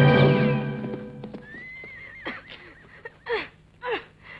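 Orchestral film score fading out in the first second, followed by a horse whinnying: a high wavering call, then short loud cries that drop sharply in pitch, three of them in the second half.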